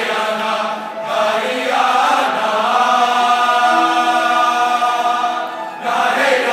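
Large choir of mixed voices singing, holding long sustained chords, with a brief break about a second in and another just before the end.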